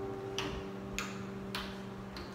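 The strings of a harp and a small guitar ring on and fade after a chord. Over them come three soft, sharp clicks, evenly spaced a little over half a second apart.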